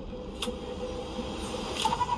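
Movie-trailer soundtrack playing back through a speaker: a steady low held drone with one sharp hit about half a second in, and a high held tone coming in near the end.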